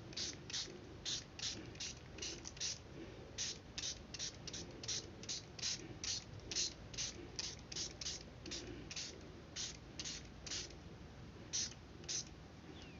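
Finger-pump spray bottle of mosquito-repellent lotion squirted again and again, about two to three short hissing sprays a second, pausing near the end for one last spray, wetting a photocopied circuit layout for toner transfer.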